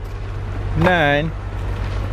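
2006 Volkswagen Passat's 2.0-litre turbo four-cylinder engine idling, heard from near the tailpipe as a low hum. A short vocal sound comes about a second in.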